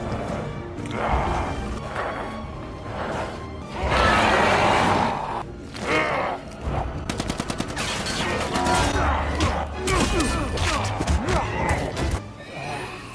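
Rapid gunfire sound effects over background music: a loud blast about four seconds in, then a long run of quick shots in the second half.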